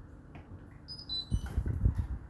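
Hotpoint NSWR843C washing machine's beeper playing a short falling run of electronic beeps as its program dial is turned to Off. Low knocks from the dial being handled follow and are the loudest sounds.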